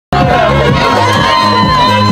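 A crowd of spectators cheering and shouting, with music playing underneath.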